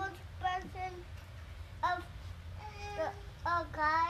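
A young child's high-pitched voice in a sing-song run of wordless syllables, with one note held briefly about three seconds in, over a steady low hum.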